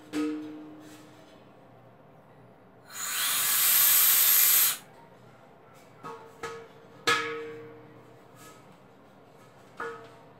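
Refrigerant vapour hissing out of the opened valve of a large pink R-410A cylinder for nearly two seconds, about three seconds in: gas escapes, not liquid. Around it the hollow steel cylinder is knocked as it is handled, each knock ringing briefly.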